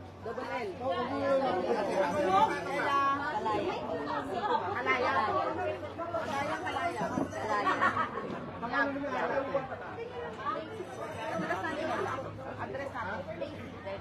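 Crowd chatter: many people talking at once around a registration table, with someone laughing about ten seconds in.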